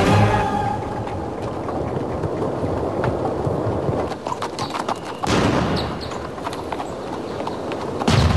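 Horses' hooves clattering amid the continuous noise of a large army in the field, with scattered knocks and clatter; the noise dips briefly and swells again a little after five seconds.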